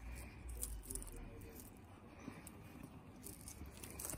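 Faint handling noise from elastic straps and mesh fabric being stretched around the back of a stroller frame, with a few light clicks and rustles.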